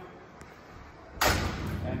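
Stryker Power-LOAD cot loader's arm and cot being pulled out along the ambulance floor rail: a sudden loud clunk a little over a second in, with a short noisy tail.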